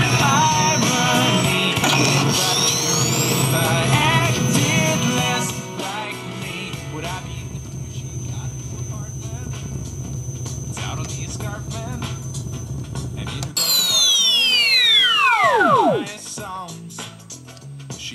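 Music from a plugged-in MP3 player playing through the sound board's speaker over a steady low hum, loud for the first five seconds and then quieter. About fourteen seconds in, the hum cuts off and a loud electronic power-down sweep falls steeply in pitch over about two seconds, the pack shutting down.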